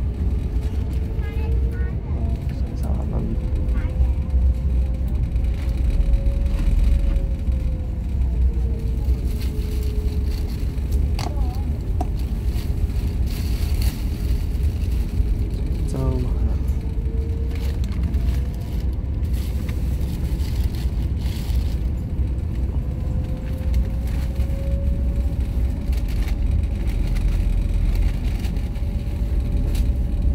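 A passenger ferry's engines running under way, with a deep steady rumble and a drone that slowly rises and falls in pitch as the ferry pulls away and turns.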